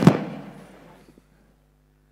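The fading tail of a loud, sudden burst of noise, dying away over about a second with some reverberation. After it comes near silence with a faint steady electrical hum.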